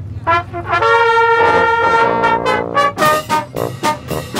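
Marching band brass section (trumpets and sousaphone) starting to play: a few short notes, then a long, loud held chord, then a run of short, punchy staccato notes near the end.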